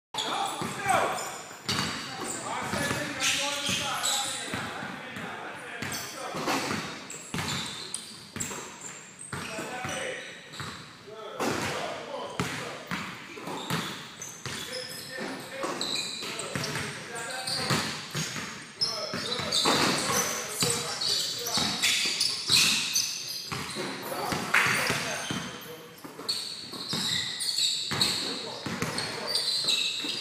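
Basketballs bouncing on a hardwood gym floor, repeated sharp impacts echoing in a large hall, with people's voices throughout.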